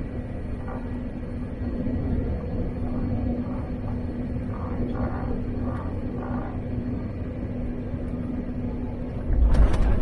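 Steady cabin rumble and engine hum inside a Boeing 787-8 rolling along the ground. About nine and a half seconds in, a sudden loud rumble cuts in.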